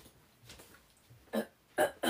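A woman's small burp: two short throaty sounds about half a second apart near the end.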